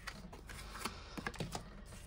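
Oracle cards being drawn from a fanned deck and laid on a wooden tabletop: a scatter of faint, light clicks and taps.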